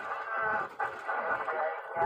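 A person's voice, drawn out and wavering in pitch.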